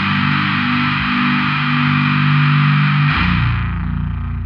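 Death doom metal: distorted electric guitars with effects hold slow, sustained chords over a low drone. A little after three seconds in, the higher part of the sound drops away, leaving a low note ringing on.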